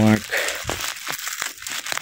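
Bubble wrap packaging crinkling as hands squeeze and pull at it, in quick irregular crackles.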